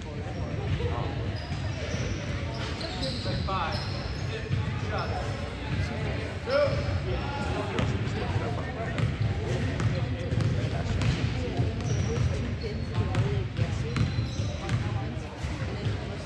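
A basketball bouncing on a hardwood gym floor, with indistinct voices of players and spectators echoing around a large gymnasium.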